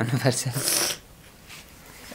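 A man's voice ending a phrase, followed by a short breathy hiss, then quiet room tone for the last second.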